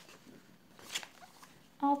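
Paper handled as a page of a printed test booklet is turned over, with one brief swish about a second in.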